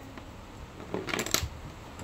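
A short run of light, sharp clicks and clinks about a second in, over low room noise.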